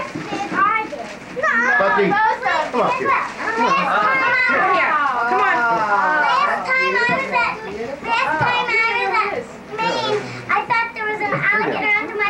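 Young children chattering, several high voices talking over one another at once.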